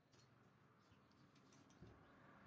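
Near silence, with a few faint small clicks of handling.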